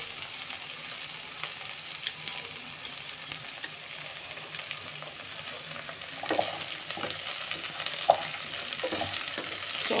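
Rice, onions and green peas sizzling in a hot pot while a wooden spatula stirs them, with a steady hiss. The spatula scrapes and knocks against the pot, more often in the second half.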